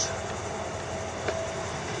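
Steady outdoor background noise, an even rush with a faint low hum and a thin steady whine, with no distinct events.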